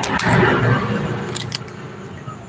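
Handling noise on a phone's microphone: a rustling, rubbing swell that peaks about half a second in and fades by about a second and a half.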